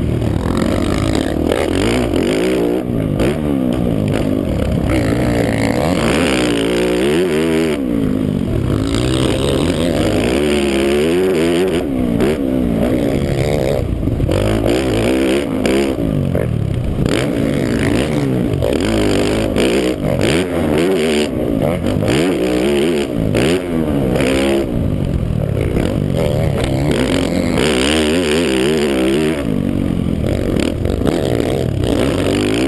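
Motocross bike engine heard close up from a bike-mounted camera, revving up and dropping off again and again as the throttle is worked around the track, its pitch rising and falling every couple of seconds.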